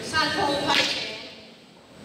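A single sharp stroke of a walking cane, wielded in a martial-arts cane form, about three-quarters of a second in, with voices in the background just before it.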